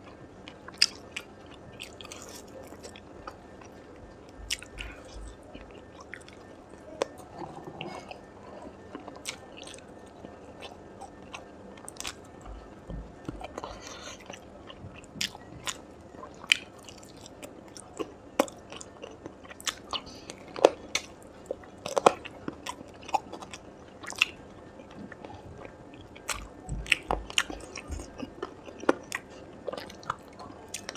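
Close-miked eating of spiced chicken tikka drumsticks: biting into the meat and chewing it, with sharp, irregular mouth clicks and smacks throughout.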